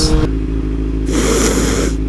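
Motorcycle engine, the inline-four of a 2001 Suzuki GSX-R 600 with a Delkevic slip-on exhaust, running at a steady pitch while riding. A short rush of hiss comes about a second in.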